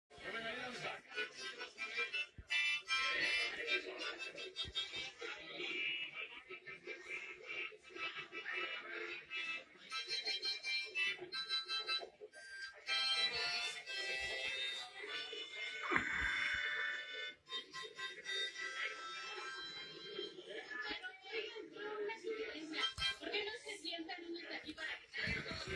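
Music with voices, played through a television's speaker and picked up in a small room.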